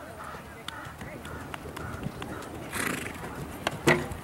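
Clydesdale–Hackney cross gelding cantering over arena sand, its hoofbeats coming as scattered soft thuds. Near the end there is one sharp, loud knock as the horse clips the rail of the fence it is jumping.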